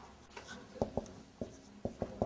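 Marker pen writing on a whiteboard: a handful of short, separate strokes and taps as letters are drawn.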